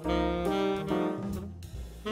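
Instrumental jazz background music: a saxophone melody of held notes over a bass line and light drums.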